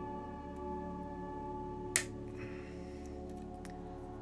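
Soft background music of sustained, bell-like tones, with one sharp metallic click about halfway through as the Allen key works the set screw.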